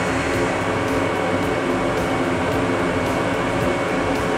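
Exhaust fan running steadily with a hum, drawing smoke out of a laser engraver enclosure.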